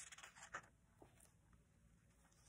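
Faint page turn of a picture book: a short paper rustle over the first half second, then a soft tick about a second in.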